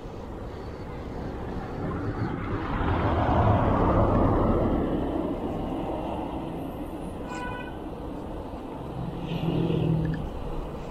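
A car passing close by: tyre and engine noise builds, is loudest around three to four seconds in, then fades as it pulls away ahead. A short high chirp comes near the end, followed by a smaller swell of vehicle noise.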